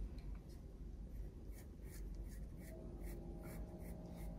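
Pencil sketching on watercolour paper: faint, short scratchy strokes repeated a few times a second.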